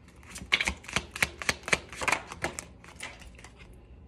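An oracle card deck being shuffled by hand: a quick, irregular run of sharp card clicks and flicks that thins out near the end.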